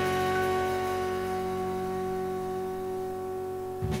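The final chord of a jazz quartet piece, with soprano saxophone, piano, bass and cymbal wash, held and slowly fading. It is broken off by a short sharp thump near the end.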